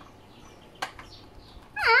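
Quiet handling of a plastic exercise-bike display console being fitted onto its handlebar mount, with one short click about a second in. Near the end a high-pitched voice calls out.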